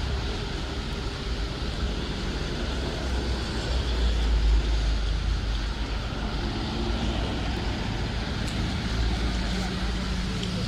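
Street traffic: cars and vans passing on a wet road, with a heavy dump truck's engine rumbling close by, loudest about four to five seconds in.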